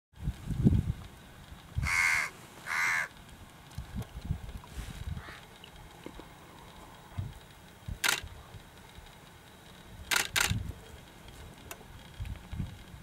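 Two harsh, caw-like bird calls about a second apart, around two seconds in, then a few sharp clicks later on, over low rumbling bumps.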